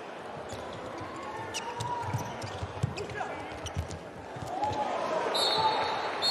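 A handball bouncing on the hard court floor as it is dribbled, a run of dull thuds through the middle, with players' shouts on court.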